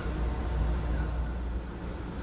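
Steady low rumble inside a JR 209 series 500 commuter train car as it runs slowly, easing a little toward the end as the train comes to a halt.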